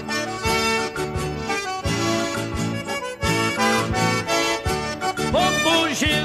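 Accordion playing an instrumental passage in the gaúcho bugio dance rhythm, over a steady, even bass beat.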